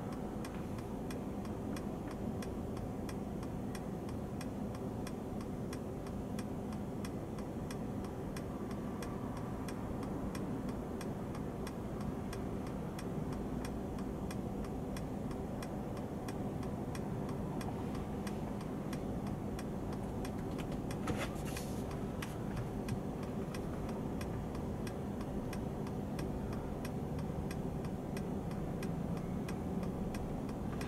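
Steady, even ticking over a low steady hum in the cabin of a car standing still in traffic.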